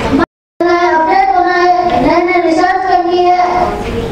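A boy singing solo in a high child's voice, holding long steady notes. The sound cuts out completely for a moment just after the start.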